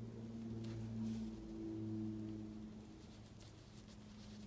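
Faint, brief strokes of an ink-loaded Chinese brush on paper, over a louder low hum of sustained tones that shift slightly in pitch.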